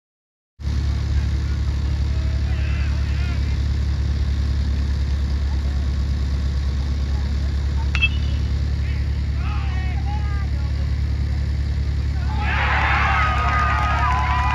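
A metal baseball bat strikes the ball about eight seconds in: one sharp ping with a brief ring. Scattered shouts follow, then the crowd breaks into cheering and yelling near the end, all over a steady low rumble.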